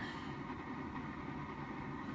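Steady low rumble with a faint, steady high tone over it.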